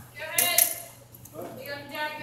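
Short snatches of a person's voice: a loud, sharp utterance about half a second in, then softer voiced sounds near the end.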